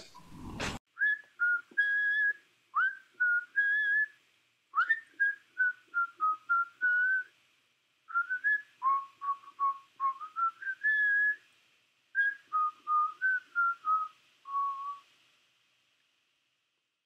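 A tune whistled by a person, with no accompaniment, in four phrases of short notes, some swooping up into the note. It stops about a second before the end.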